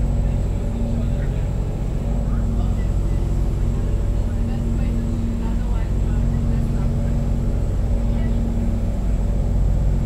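A steady low mechanical drone made of several even low tones, holding unchanged throughout.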